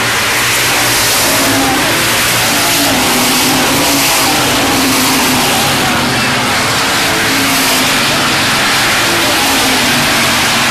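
A pack of hobby stock race cars running together on a dirt oval, a loud steady engine drone whose pitch wavers as the cars lift and accelerate through the turns.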